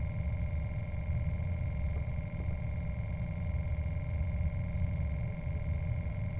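Steady low rumble with a constant high electrical whine and hum, the background noise picked up by a sewer inspection camera rig's recording.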